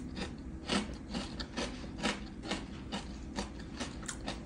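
A crisp air-fried tater tot being chewed: steady crunching, about two crunches a second.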